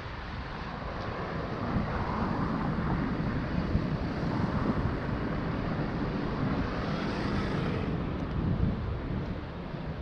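Wind buffeting the microphone: a steady rushing noise that grows about two seconds in and eases near the end.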